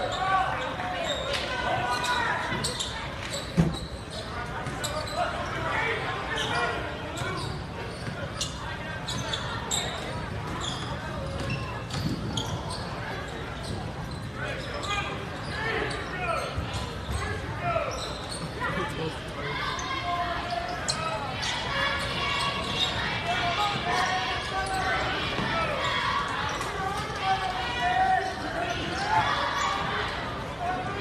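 A basketball bouncing on a hardwood gym floor during play, under steady indistinct crowd chatter from the bleachers, with one sharp knock about three and a half seconds in.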